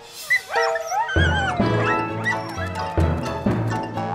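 Cartoon dogs yipping and whimpering with short wavering high calls in the first second or so, then upbeat background music with a steady beat.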